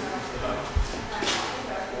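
Faint speech, with one low thump just under a second in and a short hiss a little past a second.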